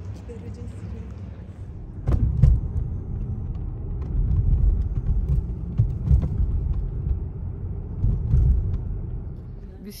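Car driving, heard from inside the cabin: an uneven low rumble of road and engine noise with occasional small knocks, starting suddenly about two seconds in after a quieter stretch and easing off near the end.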